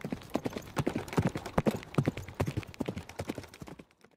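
Horse hooves clip-clopping: a quick, irregular run of hoof strikes, several a second, growing fainter and stopping just before the end.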